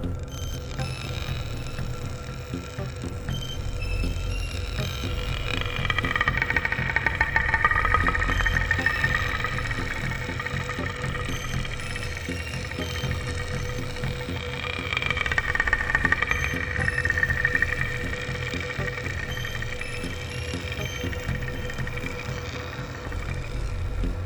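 Ambient space music: a steady low drone under a held tone, with a whirring, finely ticking mechanical texture that swells up twice and fades.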